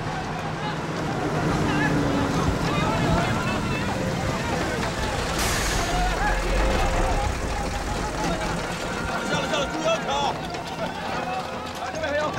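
Cargo trucks running with a low engine rumble, under a babble of many overlapping men's voices calling to each other. There is a brief hiss about five and a half seconds in.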